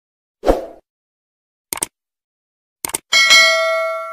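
Subscribe-button animation sound effect: a short pop about half a second in, a quick mouse double-click near two seconds and another near three seconds, then a notification bell ding that rings on and fades.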